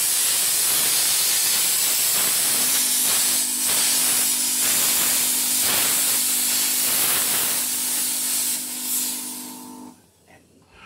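Steam cleaner's hand nozzle jetting steam onto a tiled floor: a loud, steady hiss. About two and a half seconds in, a steady low hum from the unit joins it, and near the end the hiss fades and cuts off as the steam is shut off.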